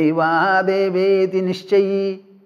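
A man's voice chanting a Sanskrit verse on a nearly level pitch, holding long syllables, with a brief break about one and a half seconds in.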